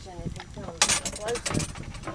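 Faint voices of people talking, with a short loud noisy burst just under a second in.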